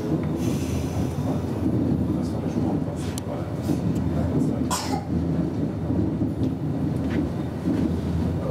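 Intercity train running along the track, heard from inside the driver's cab: a steady low rumble, broken by a few sharp clicks, the loudest about five seconds in.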